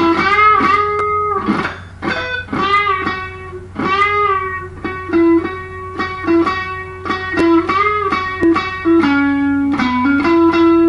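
Electric guitar played through an amp: a country lead lick of single picked notes with string bends that glide up in pitch, over a steady low hum.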